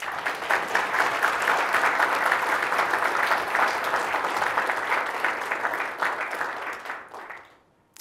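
Audience applauding, starting suddenly and dying away over the last second or two.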